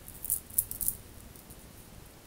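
Stacked beaded bracelets clicking and rattling together as the wrist moves, in a few quick clusters during the first second.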